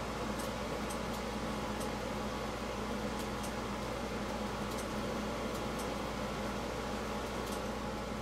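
Steady mechanical room hum with a low drone, like a running fan, and a few faint, sharp high ticks scattered through it.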